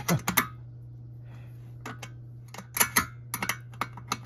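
Small metal clicks and clinks of a 10 mm wrench working a stainless steel nut tight on a solar panel mounting bracket bolt, in short clusters of a few clicks. A low steady hum runs underneath.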